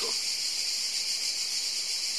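Steady, high-pitched drone of insects in a summer garden, an unbroken chorus with no change in level.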